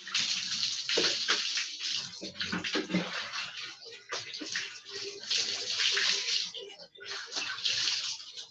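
Water poured from a dipper over a person's head and body, splashing onto a concrete floor, in several pours with short breaks between them.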